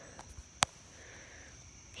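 Hushed pause with a faint steady high-pitched insect drone and soft breathing, broken by one sharp click a little over half a second in.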